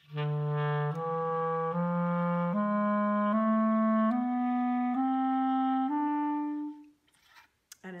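B-flat clarinet playing the E Mishaberach mode as an ascending scale in the low register: eight even, sustained notes, E, F-sharp, G, A-sharp, B, C-sharp, D, E, each stepping up from the one before, the last held a little longer.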